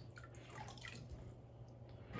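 Faint drips of water falling back into a tub as a small plastic cube is lifted out of the water.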